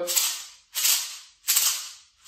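A pair of painted rawhide maracas shaken in a slow, even beat: three sharp rattling strokes about three-quarters of a second apart, each trailing off before the next.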